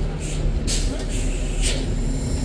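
A New Flyer D40LFR bus's Cummins ISL inline-six diesel idling steadily while the bus stands with its doors open. Two short hisses sound over it, one about half a second in and one near the end.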